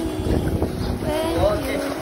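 Water sloshing and splashing around a swimmer in a stone-walled pool, with a low rumble of wind on the microphone.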